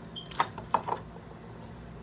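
A few sharp clicks and taps of small objects being handled, about half a second in and again just before one second, over a steady low hum.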